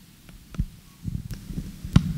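Handheld microphone being handled and moved, giving low thuds and rubbing sounds, then a sharp knock near the end as it is set down on the table.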